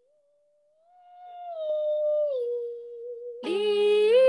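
Sung exercise in a voice lesson. One voice, thin as if heard over a video call, holds a note that glides up, steps down twice and wavers. About three and a half seconds in, a second, louder and fuller voice begins a long sung note that slides up.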